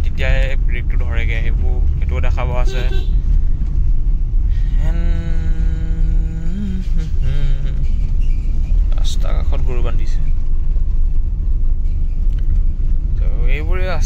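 Steady low in-cabin rumble of a Maruti Suzuki Alto 800 on the move, road and engine noise, over which a man talks. About five seconds in he holds one long drawn-out vowel for about two seconds.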